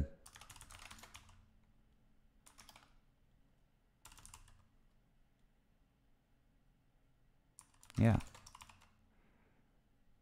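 Faint computer keyboard typing in a few short bursts of keystrokes, as a line of code is entered.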